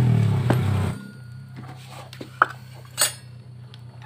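Metal tools and scooter CVT parts clinking as they are handled, a few sharp clinks with the loudest about two and a half and three seconds in. A loud engine hum fills the first second and cuts off abruptly, leaving a faint steady low hum.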